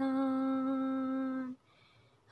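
Unaccompanied female voice singing one long, steady held note that stops about a second and a half in.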